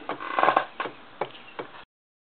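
Electrostatic seesaw ticking as it rocks: its metal-painted plastic spheres strike the charge collector spheres. A short rattle comes just before half a second in, followed by three sharp clicks a little under half a second apart.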